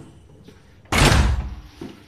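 A metal apartment front door shut hard, one loud slam about a second in that dies away over the next half second, with a lighter knock just after.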